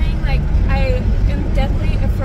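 A woman talking inside a moving car over a loud, steady low rumble of road and wind noise.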